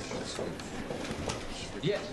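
Light rustling and small knocks of people getting up and changing seats at a small table, with a man saying a short word near the end.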